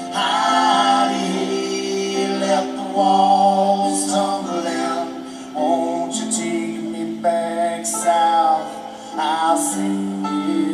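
Live country-rock band performance: a lead vocal sung into a handheld microphone over long held low harmony notes, with no words picked out.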